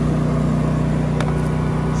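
Belt-driven refrigeration unit running with a steady hum on a freshly replaced drive belt, the old belt having broken and stopped the fridge cooling. There is a light tick just after a second in.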